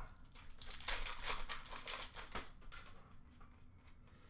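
Trading cards being handled by hand: a quick run of crisp rustles and slides of card stock, busiest in the first half and tapering off.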